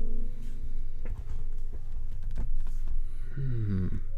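Background music: held notes over a steady low bass, with a falling slide in pitch near the end.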